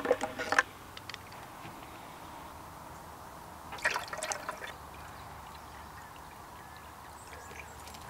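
Clean water pouring from a plastic jerrycan into the fill opening of a Lifesaver Cube water purifier, a steady trickle filling the container to prime its filter cartridge. A few plastic clicks come at the start as the pump cap comes off, and there is a brief louder burst about four seconds in.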